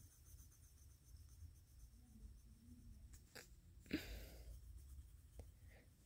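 Near silence with faint pencil-on-paper strokes as the pupils of a drawn face are dotted in. About four seconds in there is a short breathy sound.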